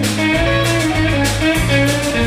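Live blues and soul band playing an instrumental passage: electric guitar over a steady bass line and drums.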